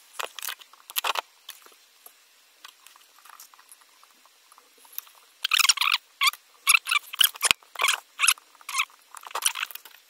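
Irregular small scratching and clicking as thin copper wire and a soldering iron are handled against a battery-protection circuit board and 18650 cell pack; a few scattered clicks at first, then a dense run of scratchy clicks over the second half.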